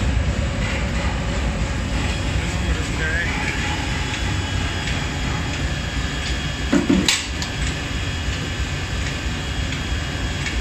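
Steady low rumble of a forge furnace and running forging machinery, with a sharp clank of hot steel and tongs on the hammer's die a little before seven seconds in.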